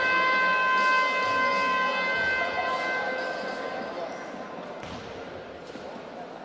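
Basketball arena's game horn sounding one long steady buzzer tone that fades out about four seconds in, echoing in the sports hall; it marks the end of the break before the third quarter.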